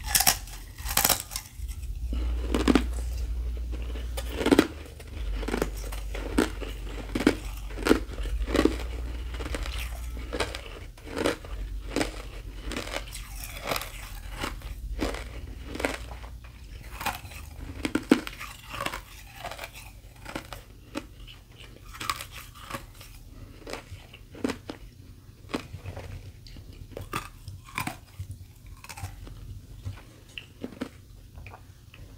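A thin sheet of carbonated ice snapped with the teeth, then chewed with a run of crisp crunches about one a second, growing softer in the second half as the ice breaks down.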